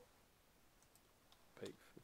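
Faint computer keyboard keystrokes: a few scattered key clicks over near-silent room tone, the loudest about a second and a half in.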